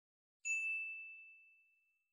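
A single high, bell-like ding about half a second in, its clear tone dying away over about a second.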